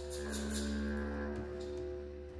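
Live ensemble music: reed instruments holding a steady drone of several sustained notes, a stronger note coming in just after the start, with short hand strokes on a frame drum over it.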